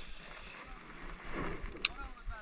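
Faint outdoor wind noise, then a single sharp click near the end as the baitcasting reel is engaged for the retrieve.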